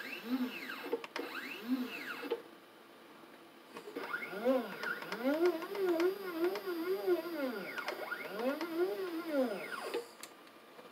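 Stepper motors of a 3018 desktop CNC router jogging the spindle carriage, a whine that rises and falls in pitch with each move. Two short moves come first, then after a pause of over a second a run of back-to-back moves lasting about six seconds.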